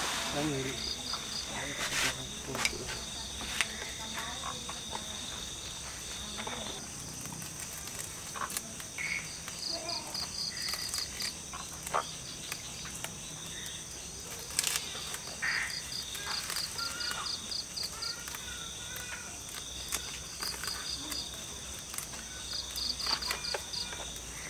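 Crickets chirping in short pulsed trains, repeating every few seconds over a steady high insect trill. Occasional brief scrapes and knocks come from hands pressing sandy potting media around a bonsai's base in its pot.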